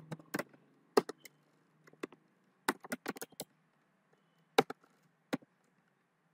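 Typing on a computer keyboard: about a dozen sharp keystroke clicks, irregular and in small clusters with short pauses between.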